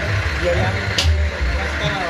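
Indistinct voices over the uneven low rumble of the sawmill's engine running, with a single sharp click about a second in.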